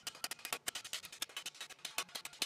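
A rapid, even run of hammer taps on a half of a mild-steel helmet held over a stake, putting a crease into the side of the helmet.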